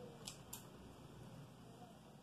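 Near silence: quiet room tone with two faint clicks within the first second.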